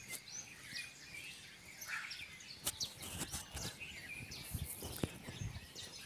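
Birds chirping here and there, short high calls over a faint outdoor background hiss, with a few light clicks.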